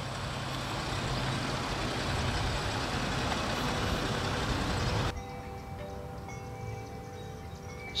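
Steady outdoor noise, an even hiss with a low steady hum, that cuts off suddenly about five seconds in. After the cut a much quieter background remains, with a few faint steady tones.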